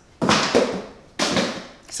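Two short breathy exhales from a woman, each starting suddenly and fading over about half a second.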